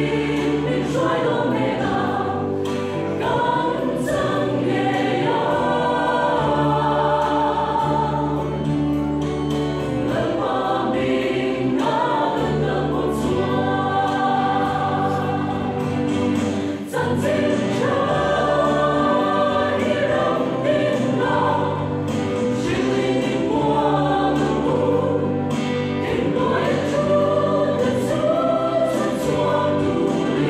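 Mixed choir of men and women singing a gospel song together, sustained and continuous, with one brief break about halfway through.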